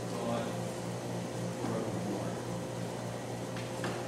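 Steady low hum of room tone in a lecture hall, with two faint clicks near the end.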